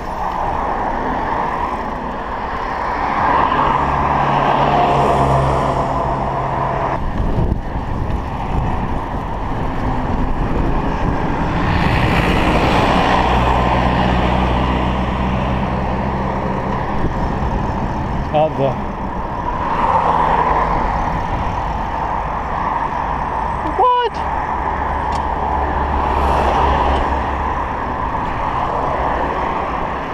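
Road traffic: motor vehicles passing, their engine noise swelling and fading in several waves, with a few short voice-like calls in between.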